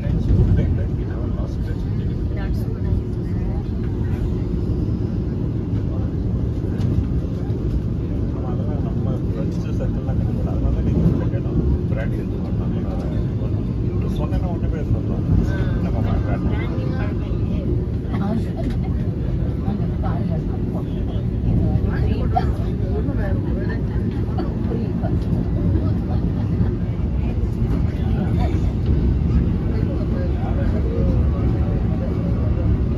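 Steady low rumble of a Vande Bharat Express electric train running at speed, heard from inside the coach, with voices of other passengers faint in the background.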